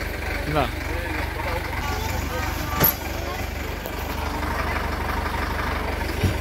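Mahindra 475 DI tractor's four-cylinder diesel engine idling steadily, with a sharp knock about halfway through.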